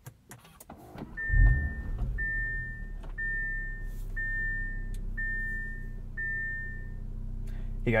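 An Audi RS 3's 2.5-litre turbocharged inline-five is started from inside the cabin, with a brief burst of revs about a second in, then settles to a steady low idle. A dashboard warning chime beeps six times, about once a second, over the idle.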